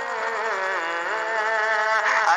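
A sung naat (Islamic devotional song): one voice holding a long note that glides down in pitch in the first second, then holds lower.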